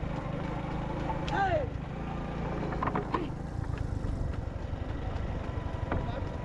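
Steady low rumble of a motor vehicle's engine running as it follows a bull-drawn race cart, with one falling shouted call about a second in.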